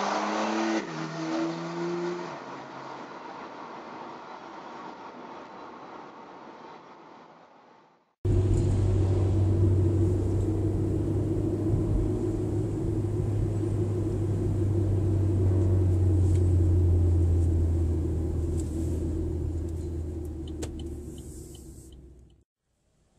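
Car engine and road noise heard from inside a moving car. In the first seconds the engine pitch steps down a few times and the sound then fades. After a sudden cut about eight seconds in, a louder, steady low engine drone with road noise takes over and eases off near the end.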